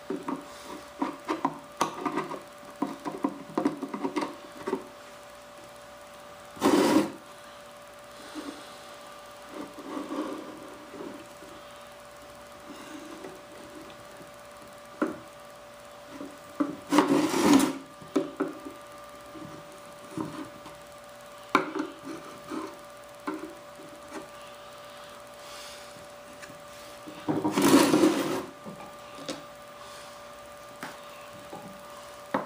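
Small metal scraper blade scraping modelling clay off a mold's surface in many short strokes, with three longer, louder scrapes spaced about ten seconds apart. A faint steady hum runs underneath.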